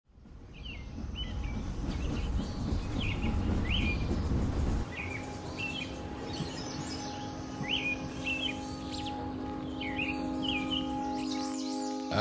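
Small birds chirping outdoors, short chirps repeating about once a second, over a low background rumble that cuts off about five seconds in. From then a sustained low musical chord holds steady underneath the chirps.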